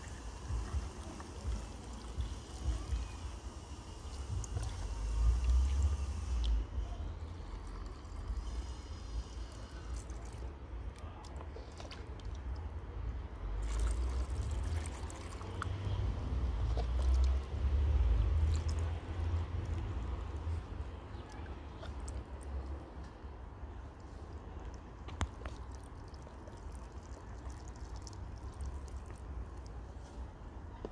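Salt brine pouring from a plastic jug into a large glass jar packed with vegetables, a steady splashing trickle for about the first six seconds. A second, shorter pour comes about fourteen seconds in, after the jug is dipped back into a tub of brine. A low rumble comes and goes underneath throughout.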